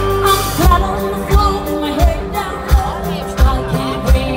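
Live rock band with a female lead singer, drums and bass guitar playing. A held chord gives way about half a second in to a steady drum beat, roughly one hit every 0.7 s, under her singing.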